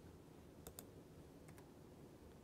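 Faint clicks of laptop keys or trackpad, in two quick pairs: one a little over half a second in, the other about a second and a half in, over near-silent room tone.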